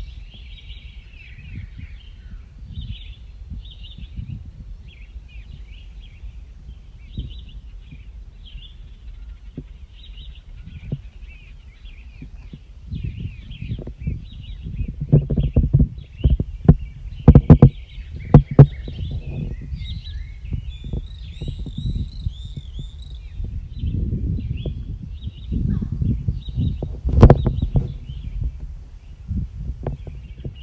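Small birds chirping and trilling throughout. From about halfway through, heavy low rumbling and knocking buffets the microphone, loudest in the middle and again near the end.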